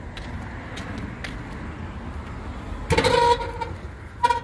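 Outdoor background rumble with a few faint clicks, then about three seconds in a sudden, short, steady-pitched honk-like tone that fades within about a second.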